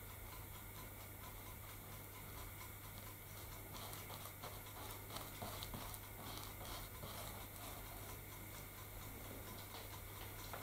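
A paintbrush dabbing and spreading white glue on a model layout's painted terrain: faint, quick scratchy brush strokes that get busier from about four seconds in.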